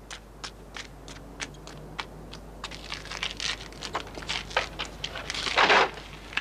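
Scattered short crackles and rustles, with a louder rustling burst about five and a half seconds in.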